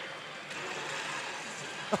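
Steady din of a pachislot hall: a dense, even wash of machine noise with no single sound standing out.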